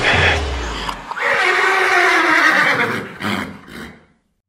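A loud, shrill cry that falls slowly in pitch for about two seconds, followed by a shorter burst, then the sound cuts off suddenly.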